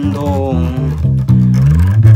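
Electric bass guitar played fingerstyle: a run of sustained low notes that change pitch several times.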